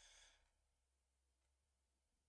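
Near silence, with one faint exhaled breath right at the start.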